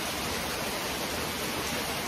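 Steady hissing background noise with no distinct events.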